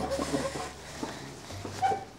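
A wooden chair being pulled out and sat on over a tiled floor, with a short squeak near the end.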